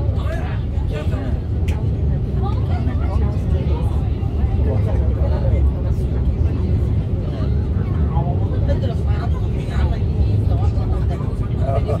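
Noisy passenger train running, heard from on board as a loud, steady low rumble, with indistinct voices talking over it.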